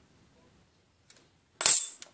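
A small steel rule set down on a workbench: one short, sharp metallic clatter about a second and a half in, after a faint click.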